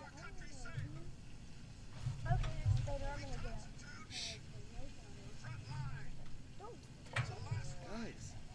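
Quiet, indistinct voices talking on and off, over an intermittent low rumble.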